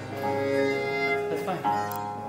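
Baroque violin playing a 17th-century Italian sonata over a continuo accompaniment of plucked and bowed bass instruments and harpsichord: sustained bowed notes, with a quick sliding figure about one and a half seconds in.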